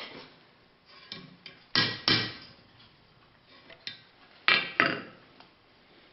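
Hand hammer striking a hot steel S hook on an anvil to adjust it. Four sharp metal blows in two quick pairs, about two and a half seconds apart, with a few lighter taps between.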